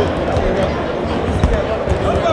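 Basketballs bouncing on a hardwood court, a few irregular thuds, under the steady chatter of a large crowd in a gym.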